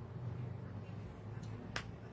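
Sharp clicks of a hand's fingers: a faint one, then a louder one shortly after, near the end. A steady low hum runs underneath.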